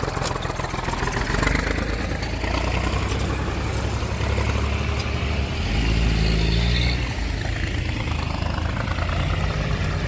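Tractor engine running steadily, growing louder for about a second around six seconds in.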